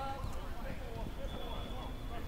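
Footballers' distant shouts and calls across an outdoor pitch, over a steady low rumble.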